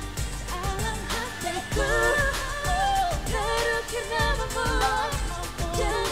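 Pop song sung live by a group of singers into handheld microphones, over a backing track with a steady drum beat.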